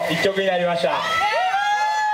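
A man speaking Japanese into a microphone through a PA system. About a second in, the speech gives way to one long held high tone that rises at its start.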